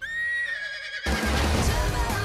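An animated horse whinnies once: a high call held for about a second that dips slightly in pitch. About a second in, music starts abruptly with a heavy beat.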